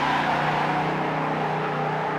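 A motor vehicle running loudly: a steady rushing noise with a low, even engine hum beneath it.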